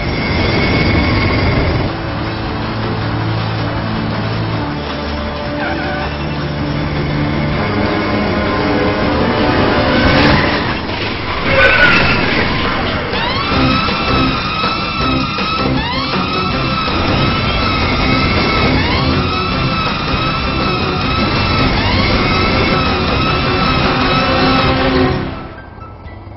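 Road traffic noise with music playing. From a little past halfway, emergency sirens wail in repeated rising-and-falling sweeps, several overlapping.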